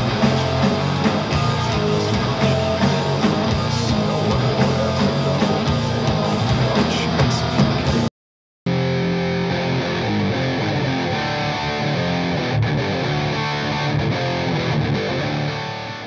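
Heavy metal music with distorted electric guitar and bass that cuts off suddenly about eight seconds in. After a half-second silence a duller-sounding rock track plays and fades out at the end.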